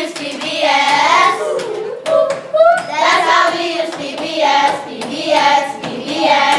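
A group of children singing together in unison, with hand claps.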